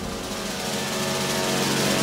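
Background score: a sustained droning chord that swells steadily louder.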